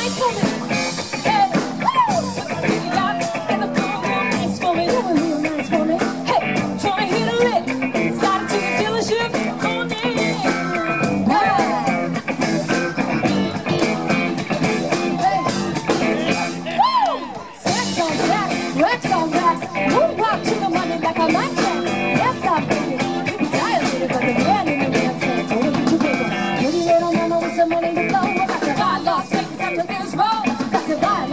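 Live rock band playing outdoors: a woman singing lead over electric guitar, keyboards and a drum kit, with a steady beat. The music drops briefly a little past halfway, then comes straight back in.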